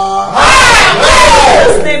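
A man's held "oh" breaking into a loud, strained shout that rises and then falls in pitch over about a second and a half: a preacher's cry in fervent prayer.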